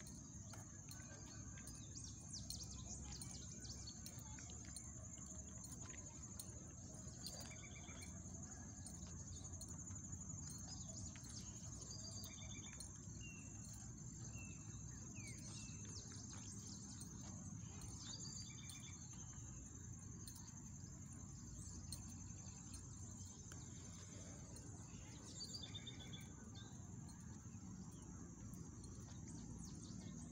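A steady, high-pitched insect trill runs without a break, with short bird chirps now and then, mostly in the middle and again near the end.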